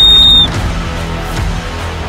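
A plastic coach's whistle blown once, a single high-pitched blast lasting about half a second that is the loudest sound here. Background music with a steady beat plays under it and carries on after it.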